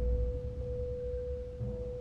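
Suspenseful drama score: one steady held tone over low, deep drum hits, with another soft low hit near the end.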